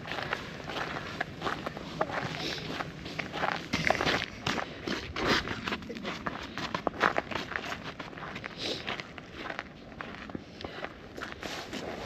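Footsteps of people walking on a wet, slushy paved path with snow along it, an uneven run of steps.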